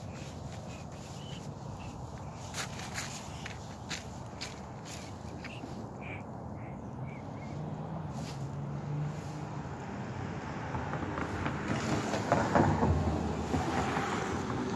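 Outdoor ambience of a person walking with a phone: footsteps and handling noise over a steady low rumble. A few sharp clicks and faint short high chirps come in the first half, and the handling noise grows louder near the end.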